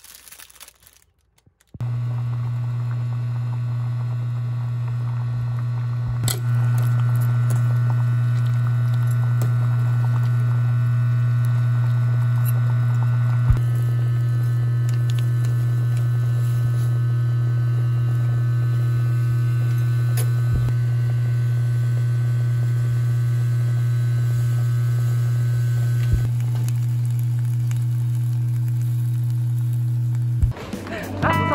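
Loud, steady low electrical hum of a kitchen appliance running during cooking, starting about two seconds in. Its overtones shift slightly a few times, each change marked by a short click.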